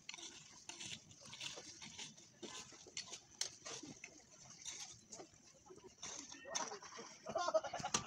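Long-handled shovels scraping and turning wet gravel, sand and cement in a hand-mixed concrete pile, a rough scrape every second or so. Near the end a voice-like call rises over the scraping.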